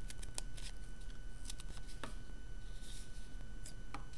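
Scissors snipping through several layers of folded paper, a series of short, irregular snips as small shapes are cut out.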